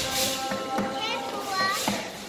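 Ukulele and guitar ensemble strumming a hula song, with voices over the music.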